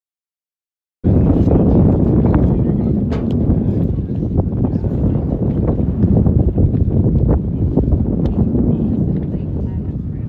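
Silence, then about a second in, open-air ballfield ambience starts suddenly: wind buffeting the microphone in a steady low rumble, with faint voices and a few light knocks.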